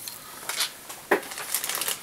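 Close rustling and crinkling handling noises from work at a fly-tying vise, with one sharp tap a little after a second in.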